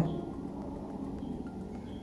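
Low steady background hum with no distinct event.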